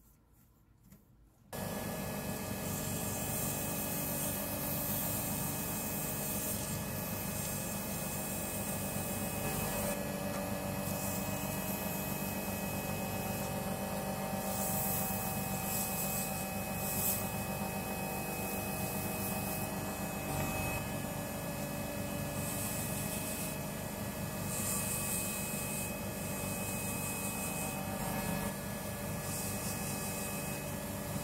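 Small wood lathe running with a steady hum while sandpaper rubs on the spinning wooden pen blank; the hiss of the paper comes and goes with each pass. It starts suddenly about a second and a half in, out of near silence.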